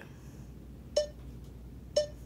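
Two short, sharp clicks about a second apart: a button pressed on a BlueDial-LT wireless digital dial indicator, each press capturing a reading in single capture mode.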